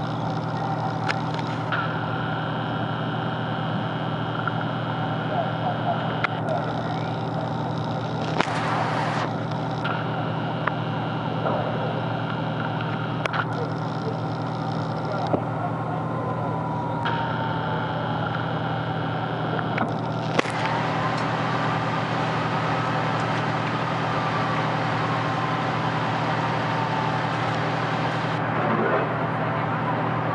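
Fire engine idling steadily, its engine note constant throughout, with scattered sharp clicks. From about halfway a distant siren slowly falls, then rises and falls again in pitch.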